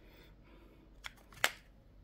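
Two short clicks about half a second apart, the second louder, from clear hard-plastic coin capsules being handled and knocking against each other.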